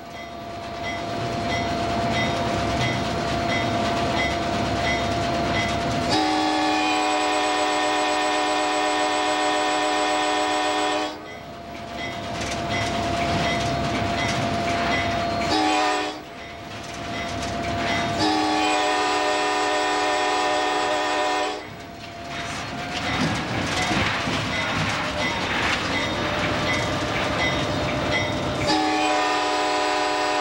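Diesel locomotive air horn, heard close up from the locomotive, blowing a series of long, steady chords with short breaks between them as the train approaches grade crossings, over the rumble of the moving train.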